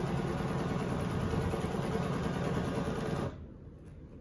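Domestic sewing machine running steadily at about half speed with the pedal fully down, stitching ruler-guided free-motion quilting, then stopping about three seconds in.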